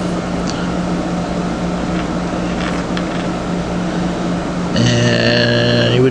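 Steady low hum with background hiss. Near the end a man's voice holds a long, level-pitched 'uhh' for about a second before he speaks.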